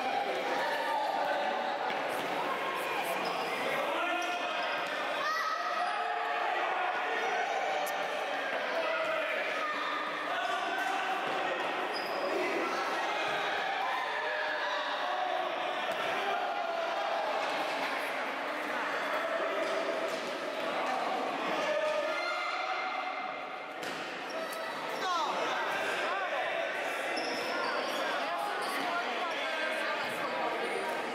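Indoor futsal game in a large, echoing sports hall: continuous overlapping shouts and chatter from players and spectators, with ball bounces and shoe squeaks on the court floor.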